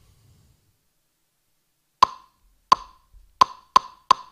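Drumsticks clicked together as a count-in, starting about two seconds in: two slow clicks, then quicker ones at twice the pace, each a sharp wooden click.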